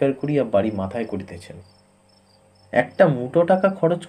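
A man reading a story aloud in Bengali, with a pause of about a second in the middle. Beneath the voice runs a faint, even, high chirping.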